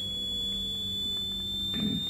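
Steady high-pitched electronic whine that slowly rises in pitch, over a low hum, carried in the audio of an old broadcast recording. A short breath or start of a word comes near the end.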